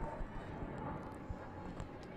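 Faint outdoor ambience from a sports field: a low, uneven rumble with a few light knocks and no clear voices.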